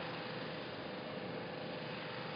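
Steady hiss of street traffic, with a faint steady hum underneath.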